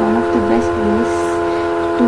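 A person's voice, faint and hard to make out, over a steady hum made of several held tones.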